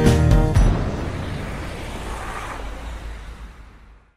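The closing beats of a children's song stop about half a second in. A cartoon sound effect of a bus driving away follows: a rushing noise that fades out steadily.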